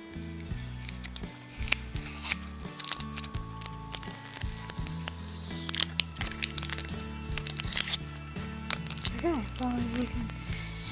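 Plastic wrapping and sticky tape crinkling and tearing as a parcel of trading cards is unwrapped by hand, with two longer tearing sounds about two seconds and five seconds in. Background music plays throughout.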